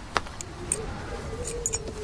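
A few light, sharp clicks and metallic clinks spaced irregularly, with a faint low held note coming in about halfway through.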